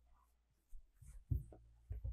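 A felt whiteboard duster being wiped across a whiteboard: a few short, soft, irregular rubbing strokes that begin about three-quarters of a second in.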